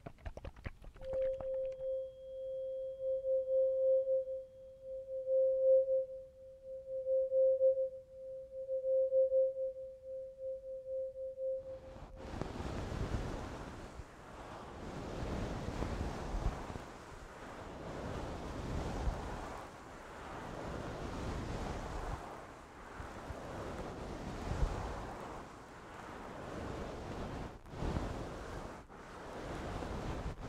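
A tuning fork rings with one steady pure tone that swells and fades every second or two, then cuts off about twelve seconds in. A soft swishing noise then takes over, rising and falling every second or two, from a trigger worked close to the microphone.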